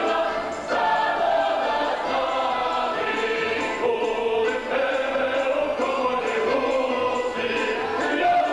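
Mixed choir of men's and women's voices singing a Ukrainian folk song in full voice, with a short break between phrases just under a second in.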